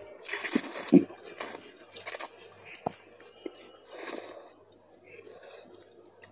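Slurping Indomie instant ramen noodles off a fork, then chewing: several short hissing slurps in the first two seconds and one more about four seconds in, with a few small mouth clicks.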